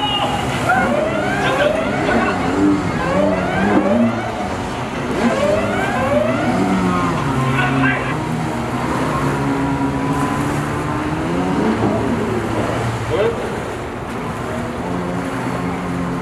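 Stand-up jet ski engine revving hard again and again, its pitch rising about once a second as the rider works the throttle through freestyle tricks.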